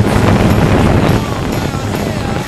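Steady, loud rushing of a multirotor drone's propellers and wind on the microphone of its onboard camera, with a low motor hum beneath.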